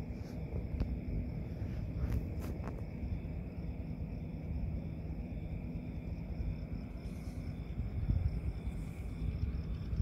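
Night-time outdoor ambience: a steady chorus of crickets or similar insects over a low rumble, with a few light clicks in the first few seconds.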